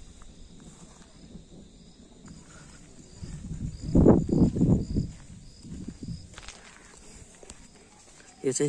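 Faint insect chirping in a regular pulse of about two a second. About four seconds in, a low rumbling gust of wind buffets the microphone.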